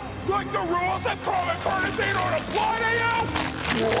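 A cartoon character's strained, effortful vocal sounds, rising to a long held cry about two and a half seconds in, over dramatic orchestral score: the voicing of a pony straining as she transforms into a hulking powered-up form.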